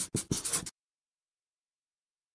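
Marker pen scribbling on paper in several quick scratchy strokes that stop abruptly under a second in.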